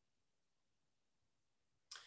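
Near silence: room tone, with a faint brief sound at the very end.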